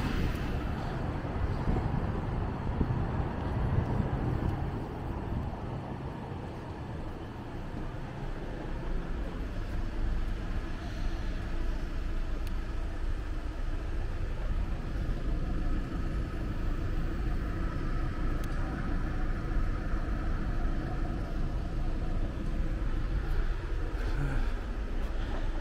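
City street traffic: a steady background of passing road vehicles, a little louder in the first few seconds.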